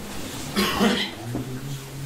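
A man coughs once about half a second in, then makes a short low hum as he clears his throat.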